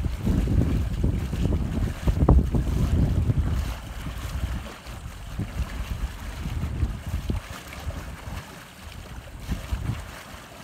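Wind buffeting the microphone: a low, fluttering gust that is strongest for the first four seconds or so, then eases.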